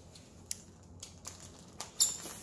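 Handling of a plastic mailer bag and a snap-off utility knife as the bag is about to be cut open: a sharp click about half a second in, then a few fainter clicks and light plastic rustling.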